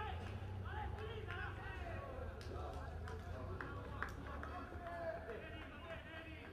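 Indistinct shouts and talk from voices on and around a football pitch, over a low steady rumble, with a couple of brief sharp knocks.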